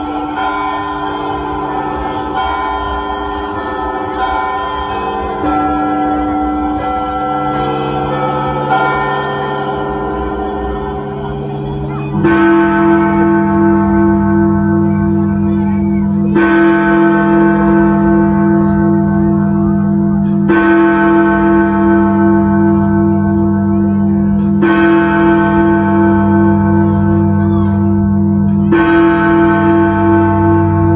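Music of long held notes that change pitch in steps. About twelve seconds in, a deep bell starts tolling, struck roughly every four seconds, each strike ringing on into the next.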